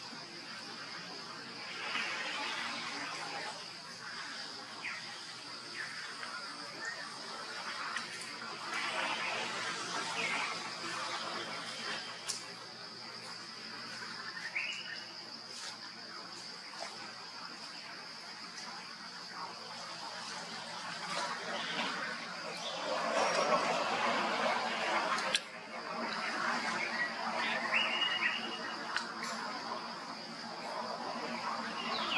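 Outdoor tree-canopy ambience: a steady, high-pitched insect drone runs throughout, with passages of rustling or scuffling noise, loudest about three quarters of the way through, and a few short rising chirps.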